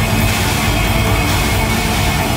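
Live hard rock band playing loud, with distorted electric guitars, bass and drums in a dense, unbroken wall of sound, recorded from the crowd by a fan's camera.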